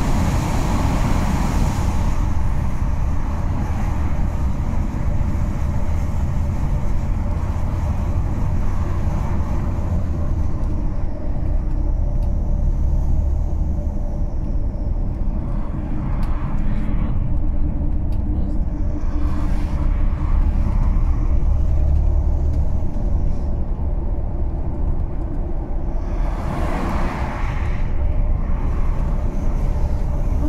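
Steady low engine and tyre rumble inside a moving vehicle on a paved road. The noise thins about two seconds in as the vehicle leaves a tunnel, and oncoming vehicles pass with a brief rush several times, the loudest near the end.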